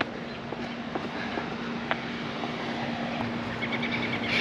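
Outdoor ambience: a steady low hum over a background of general noise, with a few faint clicks and a quick run of high chirps near the end.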